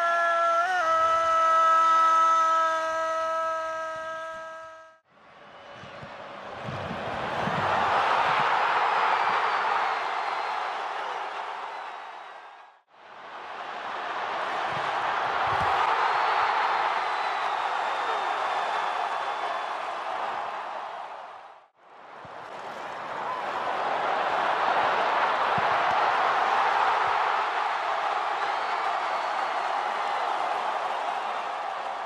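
A football commentator's long, held 'gol' call for about five seconds. Then stadium crowd noise in three stretches, each fading in and out.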